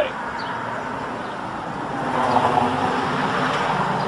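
A car driving past on the street, a steady rush of tyre and engine noise that grows louder about two seconds in.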